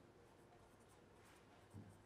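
Faint scratching of a pen writing on paper, with one soft low bump near the end.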